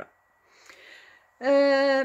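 A woman's speaking voice: a short pause with a faint breath, then about a second and a half in a long, steady-pitched held vowel as her speech starts again.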